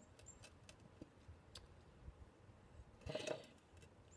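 Near silence: faint room tone with a few scattered soft clicks and a brief soft noise about three seconds in.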